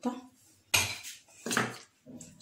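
Metal burner caps of a gas hob clinking as they are lifted off the burners: two sharp clanks, the first the louder.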